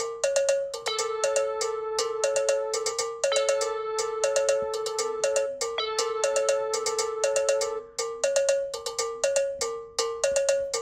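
A programmed electronic cowbell pattern looping: quick metallic pitched hits in a figure that repeats every few seconds, with a faint low note joining about halfway through.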